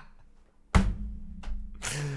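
Breathy bursts of a man's laughter: a sudden burst about three-quarters of a second in and a hissing exhale near the end, over a faint low hum.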